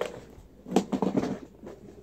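Handling noise from a tackle box: a short cluster of knocks and rustles about a second in, as its containers are shifted.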